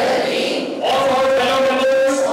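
A large group of graduates reciting an oath together in unison, many voices in a chant-like drone, with a short break under a second in before the next phrase begins.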